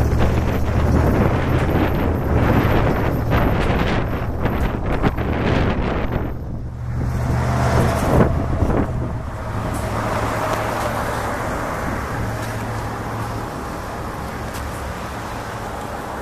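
Semi trucks passing close by one after another, their diesel engines running with tyre and road noise. The noise dips about six and a half seconds in and swells again as a tanker truck goes by, then settles to a steadier traffic hum.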